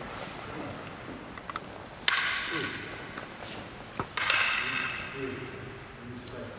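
Paired wooden bokken practice. A loud kiai shout comes about two seconds in. Near the end the two wooden swords meet with a single sharp clack, followed at once by a second loud shout, all in a large, echoing hall.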